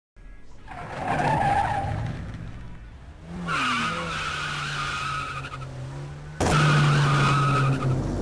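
Car tyres skidding in long squeals, with an engine running underneath. There are three stretches of squeal; the last starts abruptly about six seconds in and is the loudest.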